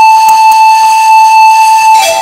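A loud, steady high synthesizer note held as a single sustained tone, a dramatic music sting in the film's score.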